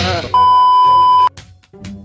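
A steady, high electronic beep, about one second long, is the loudest sound in this stretch. It comes right after the tail of a swishing cartoon transition effect, and quieter background music with a light beat follows it.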